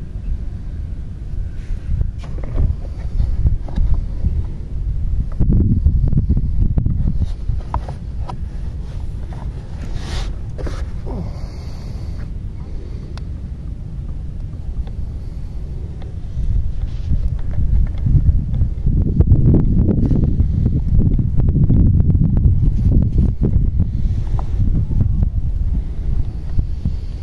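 Wind buffeting the microphone as a gusty low rumble, strongest around six seconds in and again from about seventeen seconds on, with a few faint clicks from handling the sprayer's parts.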